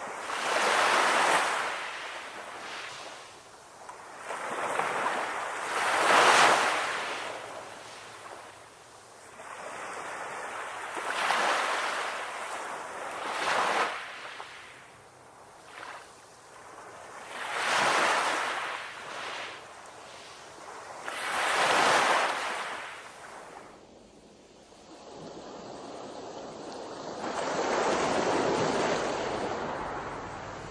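Small waves breaking and washing up on a shore, the surf hiss swelling and ebbing every few seconds.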